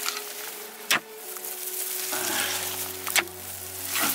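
A metal digging bar strikes into rocky soil twice, about a second in and again just after three seconds, with loose dirt and stones scraping and crumbling between the strikes. Soft background music with long held notes plays underneath.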